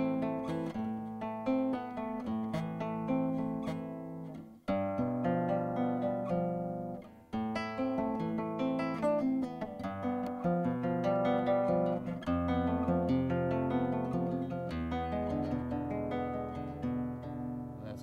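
Nylon-string flamenco guitar played fingerstyle: arpeggios plucked note by note with separate right-hand fingers, moving through several chords. The playing breaks off briefly about four and a half and again about seven seconds in.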